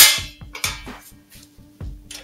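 A sheet-steel chassis panel set down on a concrete floor with a loud clang that rings briefly and dies away, followed about half a second later by a lighter metallic knock as the steel panels are handled.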